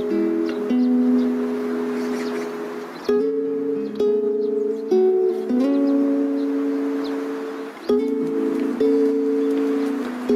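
Instrumental music: a strummed acoustic string instrument playing slow, sustained chords, with a new chord every one to three seconds.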